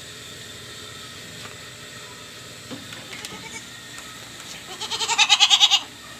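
A goat bleats once near the end, a single loud, quavering call lasting about a second. The farmer takes the doe he is handling to be in heat.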